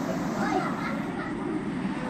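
Indistinct voices over a steady low background rumble.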